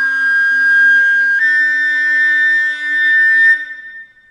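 Solo concert flute holding a long note, then stepping up to a higher held note about a second and a half in, with a faint lower tone sounding beneath it. The note stops about three and a half seconds in and dies away in the church's reverberation.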